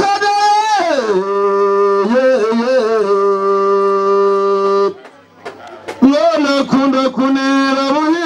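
A man chanting in long held notes. A high note slides down to a lower one that is held steady for about four seconds and breaks off just before five seconds in. About a second later the voice comes back as a wavering melodic line.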